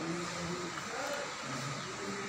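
Indistinct talking by people off-mic, over a steady hiss.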